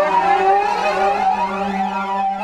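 Korg MS2000 virtual analogue synthesizer playing a custom patch: a held low note with higher tones above it that slide and waver in pitch.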